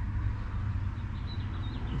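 Steady low rumble of outdoor background noise, with a faint high-pitched chirp about a second and a half in.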